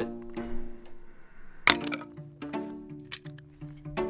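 Background music with plucked and bowed strings. Two sharp cracks cut across it, one a little under two seconds in and one about three seconds in.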